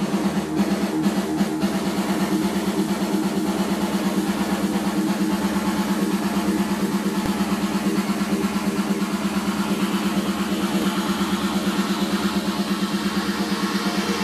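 Electro house from a DJ set played loud through a club PA, built on a fast, rapidly pulsing low synth riff. The drum hits drop out about a second and a half in, leaving the pulsing riff on its own.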